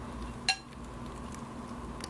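A single sharp metallic clink with a short ring about half a second in, from a serving utensil as stuffing is spooned onto the shrimp, over a low steady hum.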